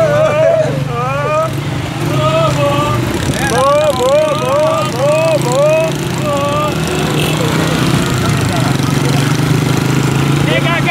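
Small motorcycle engine running steadily while the bike is ridden, with men's voices calling out over it in rising and falling phrases.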